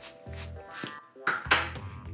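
A bristle beard brush stroked a few quick times through a thick beard, over background music with a low pulsing beat.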